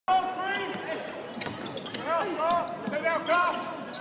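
Basketball shoes squeaking on a hardwood court in a string of short chirps that rise and fall in pitch, with a few sharp thuds of the ball hitting the floor.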